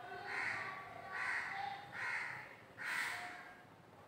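A crow cawing four times, about a second apart.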